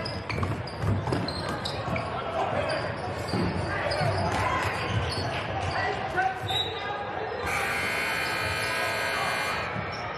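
Basketball dribbling and knocking on a hardwood gym floor under crowd chatter, then an electric gym buzzer sounding one steady, held blast of about two seconds, starting about seven and a half seconds in.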